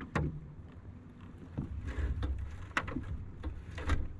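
Half a dozen sharp knocks and taps from handling on a fishing boat, the loudest near the start and near the end, over a steady low rumble.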